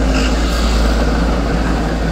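Recovery truck's diesel engine running close by: a loud, steady low rumble.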